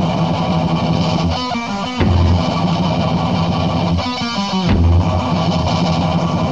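Death/doom metal from a 1988 demo tape: a slow, heavily distorted electric guitar riff over bass, the figure repeating roughly every two and a half to three seconds.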